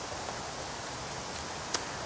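Steady background hiss with no distinct event, and one faint click near the end.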